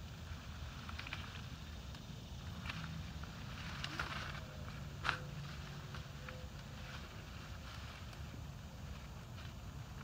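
Blackberry canes and leaves rustling and crackling as they are handled, with one sharp snip of hand pruners about five seconds in, over a low steady rumble.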